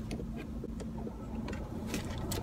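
Steady low hum of a car's interior, with a few faint scattered ticks.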